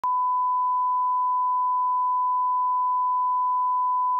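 Steady 1 kHz reference tone, one pure unbroken tone, played with colour bars at the head of a videotape dub as the line-up signal for setting audio levels. It starts with a brief click.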